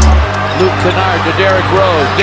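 A basketball being dribbled on a hardwood court, with short sneaker squeaks, over background music with a deep, steady bass.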